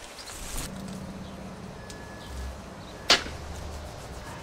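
A single sharp whoosh about three seconds in, over a low steady background hiss.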